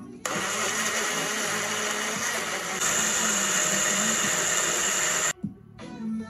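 Personal blender motor running for about five seconds as it blends sliced banana and rolled oats into a thick mixture. It starts sharply a moment in, grows louder and brighter about halfway through, then cuts off suddenly.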